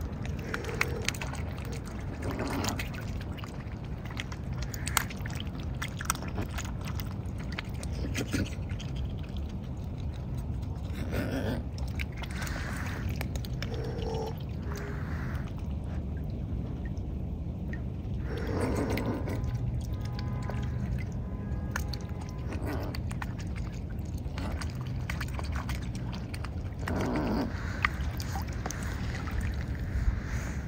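Mute swans dabbling for grain with their bills in shallow water: slurping and splashing every few seconds as they scoop, with small drips and clicks in between, over a steady low rumble.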